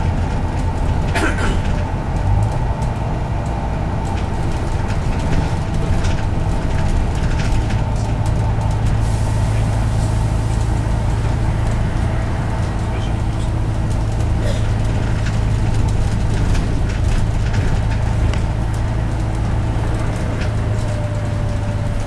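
Bus interior while driving: the engine's steady low drone with road noise and a few brief rattles from the bodywork.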